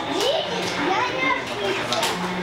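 Lively chatter of many overlapping voices, children's among them, with no single voice standing out.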